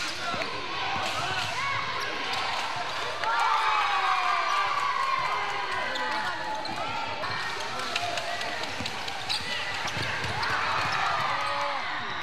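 A basketball being dribbled on a wooden gym floor during play, with repeated bounces and the voices of players and onlookers in the hall.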